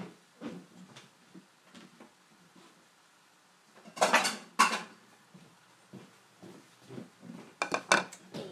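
Dishes knocking and clattering as a bowl is fetched, with light knocks throughout and two loud clatters about four seconds in.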